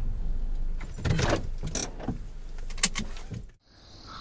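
Honda Odyssey RB3 minivan heard from inside the cabin as it is brought to a stop: a low engine hum with a few short clicks and knocks. The sound cuts off abruptly near the end.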